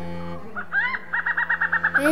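A bird's call, a rising note followed by a quick run of about nine repeated notes, over low held music notes.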